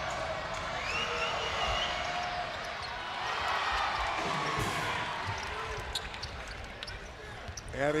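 Basketball arena crowd noise with held shouts in the first two seconds, then a basketball being dribbled on the hardwood court, sharp separate bounces in the last few seconds.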